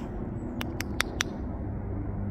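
Steady low outdoor rumble, with four quick, sharp clicks about a fifth of a second apart a little after half a second in.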